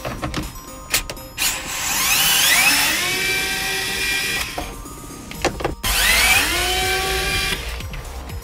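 Power screwdriver motor spinning up twice, each run a whine rising in pitch for about a second and then holding steady, the first for about three seconds and the second for under two. A few clicks come between the runs.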